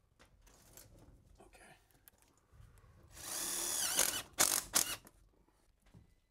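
Cordless drill-driver running for about a second, its pitch sagging as it bites, then three short trigger bursts: driving a sheet-metal screw into a galvanized steel duct fitting. Faint knocks of the duct being handled come before it.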